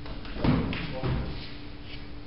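A dull thump about half a second in, followed by a brief indistinct voice, over a steady low hum.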